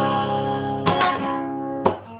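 Acoustic guitar strummed, a chord ringing with a fresh strum about a second in and a last stroke near the end, after which the sound dies away quickly.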